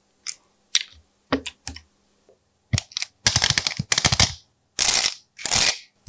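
Hands pressing and handling slime and a plastic tray of slime-filled cells: sharp crackling clicks and pops in short bursts, with longer dense crackling runs in the second half.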